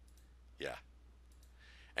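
Near silence over a steady low hum, with a few faint, sharp clicks and one short spoken "yeah" about half a second in.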